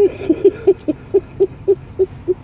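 Hearty laughter: a long run of short, evenly spaced 'ha' pulses, about four a second.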